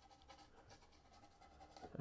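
Faint, soft scratching of a paintbrush working oil paint, barely above near silence.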